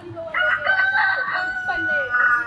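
A rooster crowing: one long crow that starts about a third of a second in and ends on a long held note.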